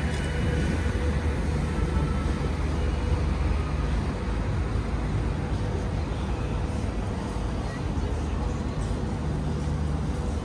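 Steady outdoor city ambience on a busy waterfront promenade: a continuous low rumble with a faint steady hum, and passers-by's voices mixed in.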